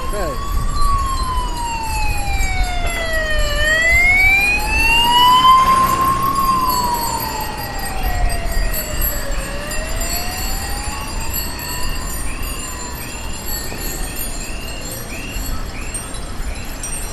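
An emergency vehicle's siren wailing, its pitch slowly rising and falling about every three seconds, then fading away after about twelve seconds. From about halfway in, a faint short chirp repeats nearly twice a second.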